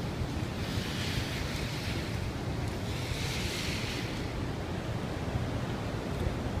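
Steady low roar of Niagara's partly frozen Horseshoe Falls, with wind on the microphone; two brief swells of hiss rise over it about a second in and again around three seconds.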